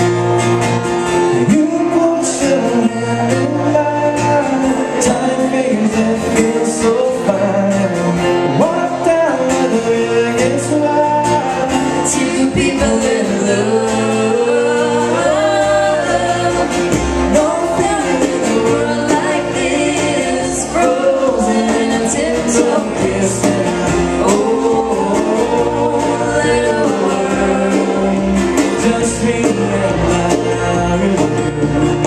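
A live acoustic country band playing a song: acoustic guitars strummed under a man singing lead with a woman's voice singing along.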